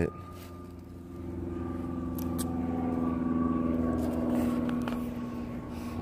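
A vehicle passing, its engine and road noise swelling from about a second in and fading near the end, over a steady low hum.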